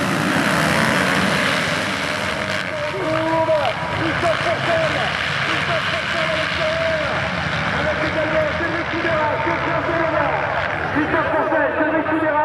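A full gate of motocross bikes launching from the start at full throttle: a dense mass of engine noise at first, then individual engines revving up and breaking off through gear changes as the pack pulls away.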